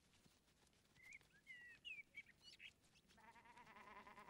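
Quiet outdoor ambience with a few faint bird chirps about a second in. In the last second a faint, long, wavering sheep bleat begins.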